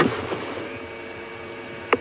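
Safari vehicle's engine idling: a steady hum over a rushing background, with a sharp click just before the end.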